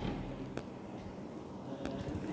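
Thick tomato gravy simmering in a pan, faint and low, with a couple of soft pops about half a second in and near the end; the gravy is cooked down to where the oil separates.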